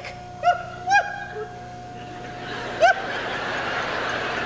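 Laughter after a comic line in a live stage show: a couple of short laughs, then a theatre audience's laughter swelling from about two and a half seconds in.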